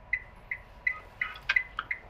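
A pause on a speakerphone call, filled with faint, even, high beeps about three times a second. About a second and a half in there is a sharp click with brief faint voice sounds around it.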